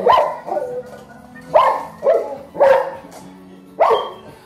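A 10-month-old Cane Corso barking in about five short, loud barks, spaced unevenly through the few seconds.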